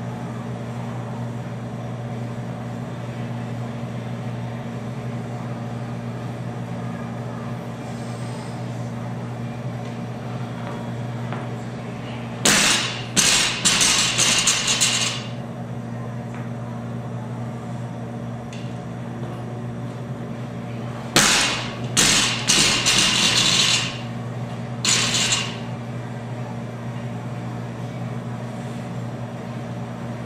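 Loaded barbell clanking: its metal weight plates rattle and strike in two clusters of sharp, ringing impacts, one about twelve seconds in and one about twenty-one seconds in, with a last clank shortly after. A steady low hum runs underneath.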